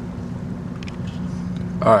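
A steady low hum from a machine running in the background, with a faint tick or two about a second in.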